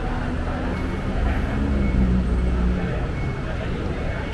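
Busy station ambience: voices of passers-by, and a low vehicle rumble that builds about a second in and fades out near three seconds.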